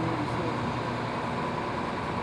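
Steady low hum of outdoor background noise, like a vehicle engine running nearby, with no clear events.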